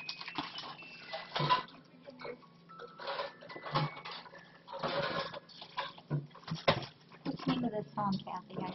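Plastic wrapping crinkling and rustling as a ceramic cup is unwrapped and handled, with irregular light knocks and clinks. The sharpest knock comes about two-thirds of the way through.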